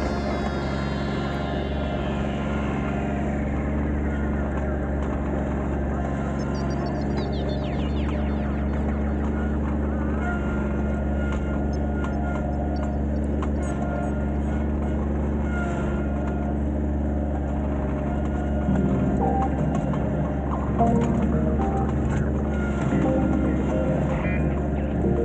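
Kubota B2320 compact tractor's three-cylinder diesel engine running steadily while it pulls a grading scraper through soil, with ambient background music over it.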